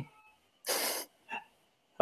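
A child crying faintly in the background, heard as a little whimpering, with a short breathy hiss about a third of the way in.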